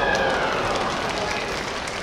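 A kendo fighter's drawn-out kiai shout trails off during the first second, then crowd applause fills the hall. The applause greets a men (head) strike being awarded as a point.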